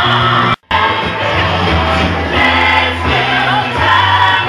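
Live rock band playing loudly, with electric guitar, keyboard, drums and singing voices; the whole sound cuts out suddenly for a split second about half a second in, then resumes.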